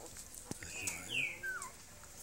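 Newborn puppies whimpering: about three short, high squeaky cries that slide in pitch, the loudest about a second in. A brief knock comes just before them.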